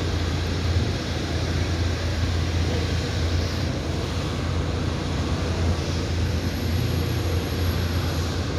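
Steady low rumble of city street noise: distant traffic and urban hum, with no distinct single events.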